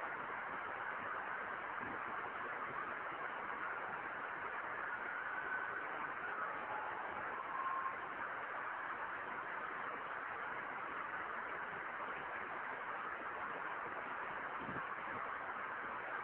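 Steady hiss of the recording's background noise, with no voice, during a pause in a recorded lecture.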